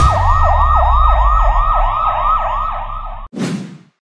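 Siren sound effect in a rapid yelp: a falling wail repeating about three to four times a second over a low rumble. It cuts off suddenly near the end and is followed by a short whoosh.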